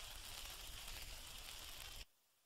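Faint, steady hiss and low hum of an old recording's background noise after the music stops. It cuts off abruptly to silence at the end.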